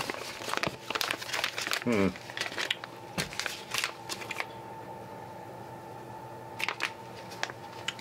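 Thin plastic food packaging crinkling and rustling as it is peeled off a block of ground plant-based burger meat, with sharp crackles through the first four seconds. It then goes quieter, with only a few light clicks near the end.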